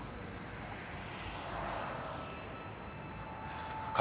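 Steady outdoor city background rumble, like distant traffic or a plane far off, swelling slightly midway and easing again.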